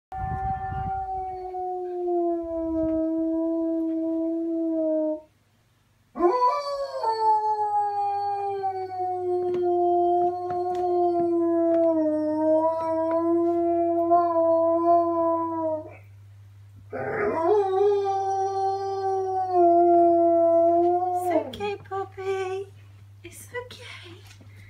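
German Shepherd howling: three long howls, each sliding up at the start and then held, the middle one about ten seconds long, followed by a few short cries near the end.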